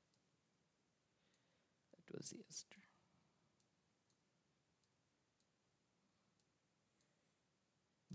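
Near silence, with a few faint computer mouse clicks spread through it and a brief, quiet murmured voice about two seconds in.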